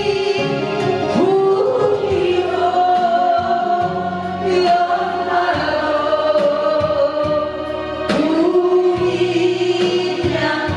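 A woman sings a Korean trot song through a microphone and PA over a karaoke backing track, holding long notes.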